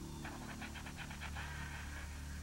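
A low, steady background music bed with a quick run of short high-pitched chirping pulses, about ten a second, laid over it from just after the start.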